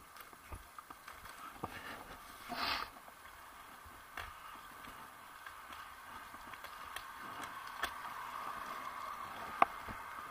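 Bicycle ride on a city street heard from the bike: steady road and wind noise with scattered clicks and rattles, a brief hiss about two and a half seconds in, and one sharp click just before the end.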